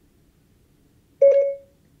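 iPhone Siri activation chime: one short electronic tone about a second in, fading quickly, signalling that Siri is listening after the "Hey Siri" wake phrase.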